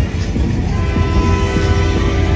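Loud, bass-heavy street sound with a horn-like chord of several steady notes that starts a little under a second in and is held.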